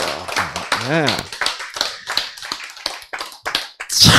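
An audience clapping: many separate, irregular claps that keep going after a short spoken word about a second in.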